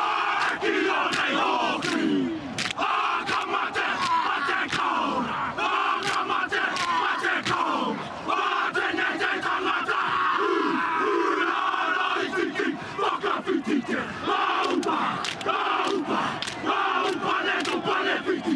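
A rugby team performing a haka: a group of men shouting and chanting the Māori war cry in unison, with frequent sharp slaps and stamps.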